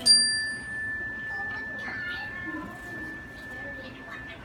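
A bell or chime struck once: a bright ding that rings on as one steady high tone for about four seconds, its higher overtones dying away within the first second. Children's voices murmur faintly beneath it.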